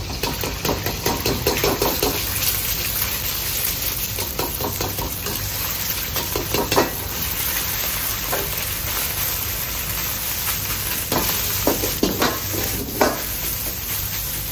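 Egg and rice frying and sizzling in hot oil in a wok, with a metal ladle scraping and knocking against the wok throughout; a few sharper clanks stand out about halfway through and again near the end.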